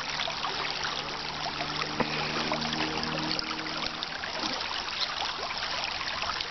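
Creek water running and trickling steadily, with a fine crackling texture.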